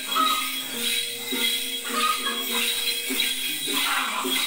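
Tày Then ritual music: a cluster of small jingle bells shaken continuously, over a melodic line of held notes.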